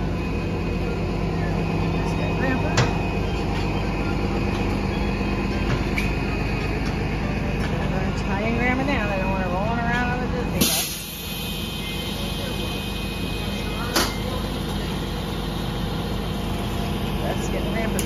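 Transit bus engine idling at a stop, a steady hum. There is a sudden short blast of air about ten and a half seconds in, and a couple of sharp clicks.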